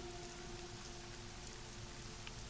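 Faint steady hiss, like light rain, with a low steady hum beneath it.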